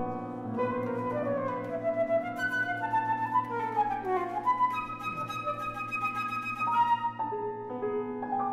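Flute and grand piano playing a classical chamber piece together: the flute carries the melody in quick runs of notes and some held notes over the piano accompaniment.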